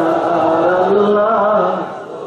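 A man chanting a slow, drawn-out melodic line into a microphone, holding long notes that glide up and down. The chant breaks off shortly before the end.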